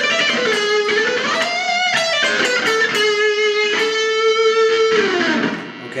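Ernie Ball Music Man electric guitar playing a single-note lead lick in A harmonic minor, built on the G-sharp, on the B and high E strings. The pitch glides up about a second in, a long note is held through the middle, and the pitch drops away near the end.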